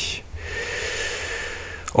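A man drawing a long in-breath through the mouth, lasting about a second and a half.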